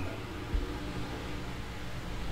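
Room tone: a steady low hum and hiss, with one faint low knock about half a second in.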